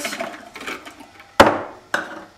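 Sultanas tipped from a plastic measuring cup dropping into a plastic food processor bowl, then a sharp hard knock about one and a half seconds in and a smaller click just before the end.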